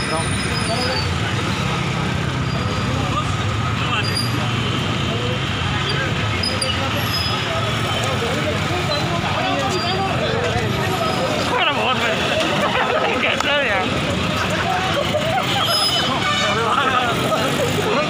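Several people talking at once over street traffic noise, with a vehicle engine running steadily underneath, most noticeable in the first half.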